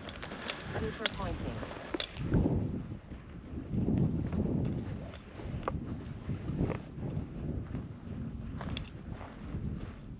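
Footsteps through dry grass and dirt, with brush rustling and scattered small snaps, and wind buffeting the microphone in uneven low swells.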